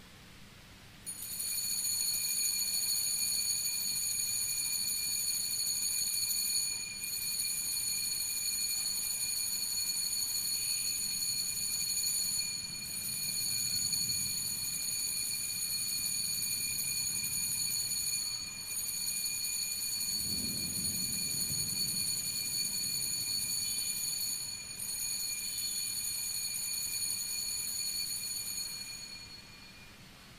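Altar bells rung continuously during the blessing with the Blessed Sacrament at Benediction: a steady, high, bright ringing that starts about a second in, dips briefly four times, and stops just before the end.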